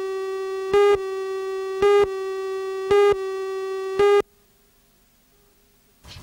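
Countdown leader tone: a steady buzzy tone with a louder beep on each count, about once a second, five times. It cuts off suddenly about four seconds in, leaving near silence.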